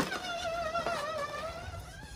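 Electric motor whine of a custom six-by-six RC tow truck driving, the pitch wavering up and down with the throttle and fading out near the end.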